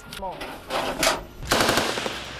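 A burst of rapid machine-gun fire from a turret-mounted machine gun starts about one and a half seconds in, after a softer rush of noise about a second in.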